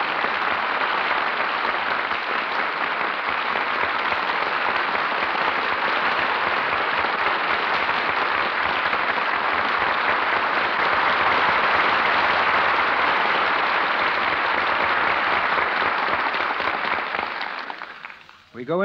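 Studio audience applauding steadily on an old 1938 radio broadcast recording, dying away near the end.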